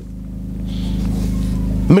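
A motor vehicle's engine rumbling low and steady, growing louder through the pause, then cut off abruptly near the end as a man's voice resumes.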